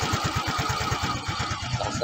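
Yamaha Mio Gear scooter's single-cylinder engine idling very low after a cold start, its exhaust pulsing about a dozen times a second and slightly uneven. The idle is so low that the scooter shakes and sounds about to stall, which the owner says is lower than when it was new and not normal.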